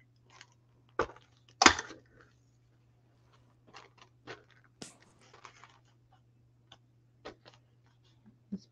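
Cardboard tags and paper being handled on a craft table: scattered small clicks and rustles, the two sharpest about a second in and just before two seconds, over a steady low hum.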